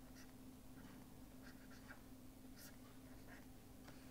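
Faint scratching of a stylus writing on a pen tablet, a string of short strokes, over a steady low hum.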